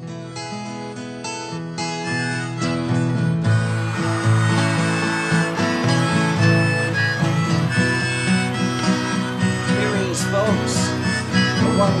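Acoustic guitar strumming a slow song intro, joined by harmonica, growing louder over the first few seconds.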